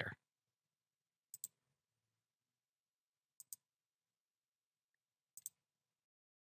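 A computer mouse clicking in near silence: three quick double clicks, about two seconds apart.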